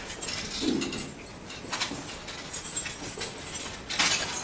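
Handling noises: cloth rustling and light clinks of metal restraint chains, in short scattered bursts.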